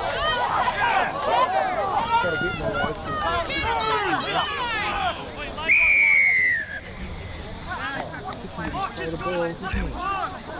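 Players and spectators shouting over each other during open play, then a referee's whistle blown once for about a second, about six seconds in, dropping slightly in pitch as it ends.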